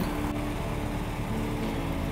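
Steady hum of an engine running at a low level, with no sharp knocks or changes in speed.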